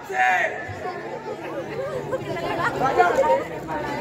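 Many voices talking over one another, with one loud, high-pitched shout at the start.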